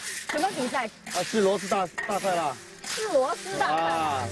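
A conversation between people talking, over a steady hiss of river snails stir-frying in a large wok.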